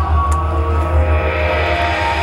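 Marching band and front ensemble playing a slow, sustained passage: held chords over a deep, steady low drone.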